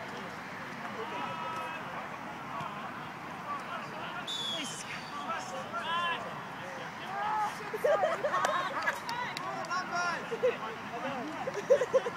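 Players' distant shouts and calls during an Oztag game, a loose babble of voices that grows busier and louder from about halfway through.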